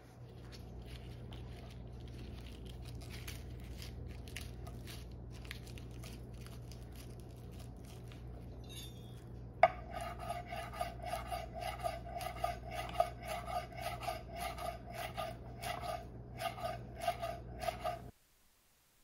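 Light rustling and faint taps of hands handling basil leaves on a wooden cutting board, then, from about ten seconds in, a knife chopping the basil: a fast, steady series of sharp knocks of the blade on the board, each with a short ring.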